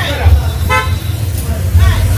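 A single short horn toot about three-quarters of a second in, over voices and a steady low rumble.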